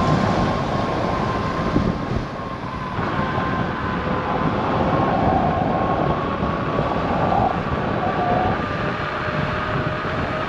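Veteran Lynx electric unicycle's hub motor whining steadily as it is ridden along the road, its pitch edging up slightly, under a heavy rumble of wind and tyre noise on the camera's microphone.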